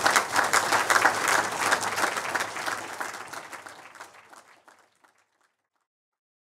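Audience applauding, a dense patter of many hands clapping that fades away over the second half and stops about five seconds in.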